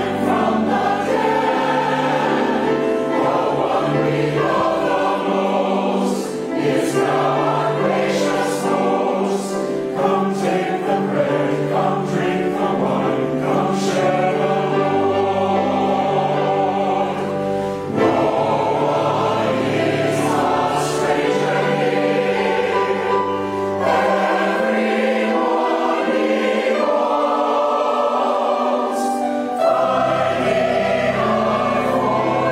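A mixed church choir of men and women singing a hymn, accompanied by piano, in sustained, steady phrases.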